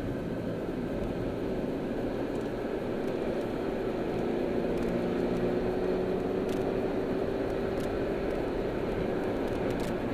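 Car engine and road noise heard inside the car's cabin as the car speeds up a freeway on-ramp. The engine note climbs slowly and the sound grows gradually louder.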